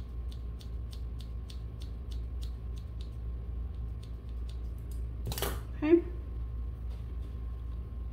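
Hair-cutting scissors snipping through a held section of hair in a run of quick, faint snips, about four a second, for the first four to five seconds. A short burst of rustling noise comes a little after five seconds, over a steady low hum.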